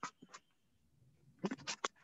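Faint scratchy, rustling noises in two short clusters of strokes, one at the start and another about a second and a half in, like something rubbing or scraping close to a microphone.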